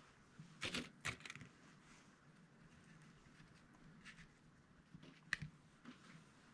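Faint handling noise of hands working wire mesh, paper clips and pins on a mounted bass skin's fin: a few light clicks and rustles, two about a second in and a sharper click near the end.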